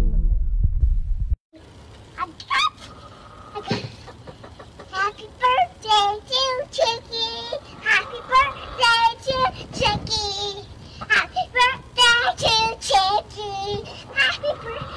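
Music with a heavy bass beat that cuts off abruptly about a second and a half in. Then a young girl sings in a high voice, in short wavering phrases.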